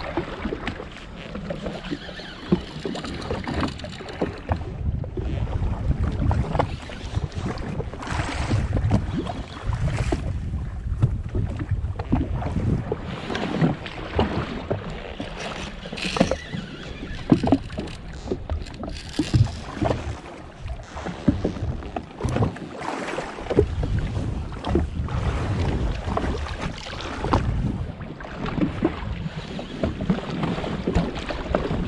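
Wind on the microphone and small waves slapping against a jet ski's hull, with irregular knocks and taps throughout.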